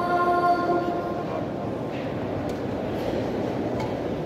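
The muezzin's voice calling the Maghrib adhan holds a long sung note that dies away about a second in, trailing off in the hall's echo. A steady murmur of a large crowd of worshippers follows.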